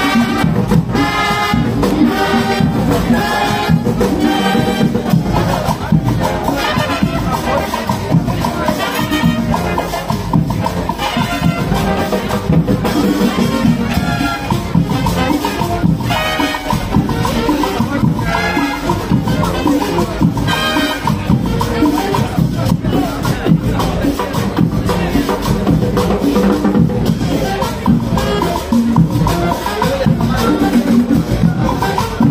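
Marching band playing a continuous tune over a steady, even percussion beat.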